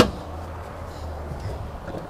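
A single sharp click right at the start, then only a low steady background hum.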